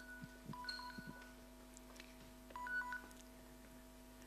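Faint short electronic beeps, a few brief tones stepping between two pitches, about half a second in and again near three seconds, over a steady low electrical hum, with a few soft knocks.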